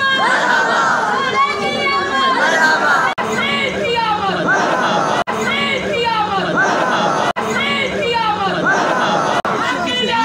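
A crowd of men chanting a devotional slogan together, with overlapping voices. The phrase repeats about every two seconds, with a brief break between repeats.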